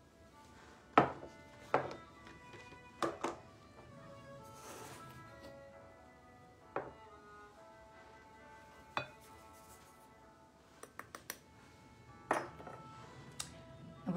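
Scattered sharp clicks and knocks of a plastic measuring cup and utensils against a glass mixing bowl and bowl rims as white sugar is scooped and added, with a quick run of small ticks near the end. Faint background music plays under it throughout.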